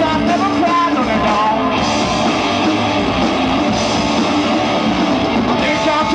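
Live rock band playing, with a singer's voice over the guitar in about the first two seconds and again near the end.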